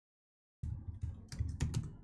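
A short run of computer keyboard keystrokes, starting just over half a second in and lasting about a second and a half.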